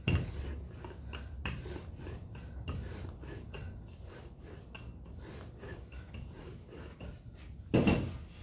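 Dough being rolled out with a rolling pin on a work table: a run of irregular light knocks and clicks, with a louder knock near the end.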